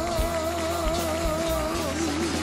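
A male singer holds the long closing note of a Greek ballad with an even vibrato over the backing band, letting it go just before the end, while the band plays on with light drum beats.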